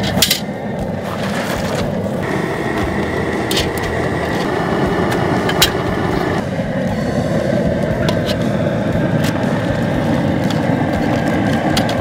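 Outdoor propane boil cooker running steadily under a big aluminium stockpot at a rolling boil. A few sharp metal clinks come from the strainer basket and tongs.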